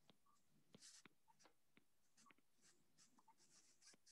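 Near silence with faint, irregular ticks and light scratches of a stylus writing on a tablet's glass screen.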